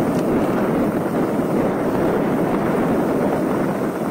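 Steady rushing noise of a mountain bike rolling over a rough gravel track: tyre rumble on loose stones mixed with wind on the camera microphone.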